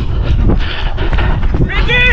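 A player running on an artificial football pitch, with footfalls and wind buffeting a body-worn camera microphone as a dense low rumble; near the end someone gives a long, high shout.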